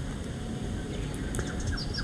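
Faint birds chirping in the background, a quick run of short, high chirps in the second half over low, steady room noise.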